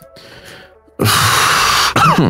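A man clearing his throat: a loud, breathy rasp about a second long that starts halfway through and ends in a cough with a falling voiced grunt.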